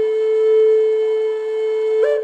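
Flute music: one long, steady held note, with a slightly higher note starting right at the end.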